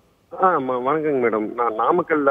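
Speech only: a man talking over a telephone line, his voice thin and cut off at the top, starting a moment after a brief pause.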